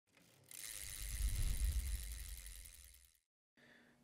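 A low rumble with a hiss over it, swelling to a peak about a second and a half in, then fading away to nothing by about three seconds in.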